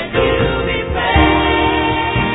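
Choir singing a gospel worship song in long held notes.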